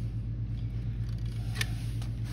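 Steady low hum with a single sharp click about one and a half seconds in.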